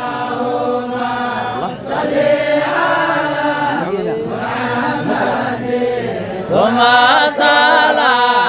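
A group of men's voices chanting a devotional Islamic song together in long, drawn-out sung notes, growing louder near the end.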